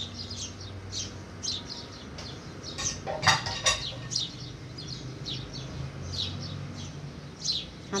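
Small birds chirping over and over in the background, short high chirps a couple of times a second. A little after three seconds in, a few sharp knocks of a utensil against a pan.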